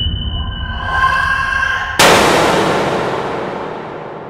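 Film sound effect: a low rumbling drone with a steady high tone swells, then a sudden loud hit about two seconds in that dies away slowly.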